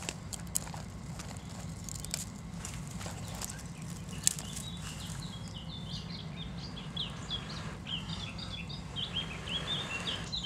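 A small bird singing in quick, short high chirps and twitters from about halfway through, over a low steady hum. A few sharp clicks and snaps come in the first half as a kindling fire is being lit in a small wood stove.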